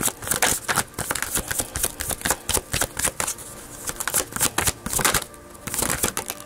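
A deck of tarot cards shuffled by hand: a quick, irregular run of crisp card snaps and rustles.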